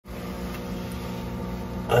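Steady low hum of running equipment with a faint hiss, as a thin jet of water sprays from a crack in a plastic Rubbermaid Commercial Products container: the container is leaking under pressure.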